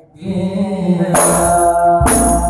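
Male voices chanting a sholawat line into microphones after a brief pause, one held, pitched line. About a second in the sound grows fuller and brighter.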